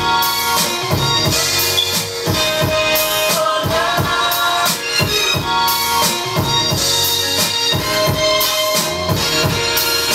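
A hip-hop beat played from an Akai MPC 1000 sampler: a drum pattern with kick and snare hits over chopped, pitched sample loops.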